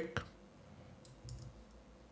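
A couple of faint computer mouse clicks over quiet room tone, selecting a hostname on screen to copy it.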